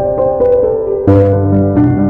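Slow piano music: held chords ringing over a bass note, with a new chord and bass struck about a second in.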